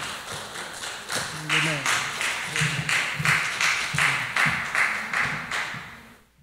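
Hands clapping in a steady run of claps, with people's voices talking under them; the sound fades out near the end.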